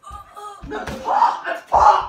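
Two sharp smacks of blows landing, about a second apart; the second, near the end, is the louder. A voice is heard faintly between them.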